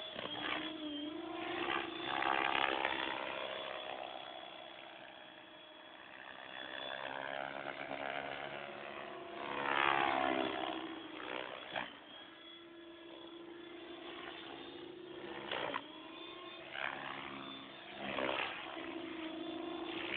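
Compass 6HV electric RC helicopter flying 3D manoeuvres: the whine of its motor and rotor blades runs throughout, sweeping up and down in pitch. It swells loudest on close passes about two and ten seconds in.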